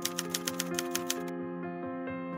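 Rapid, even typewriter key clicks sounding as text is typed onto the screen, over soft background music with held notes. The clicks stop a little over a second in and the music carries on.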